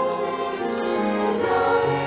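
Choir singing held chords with orchestral accompaniment of cellos, keyboard and timpani; the harmony moves to a new chord about one and a half seconds in.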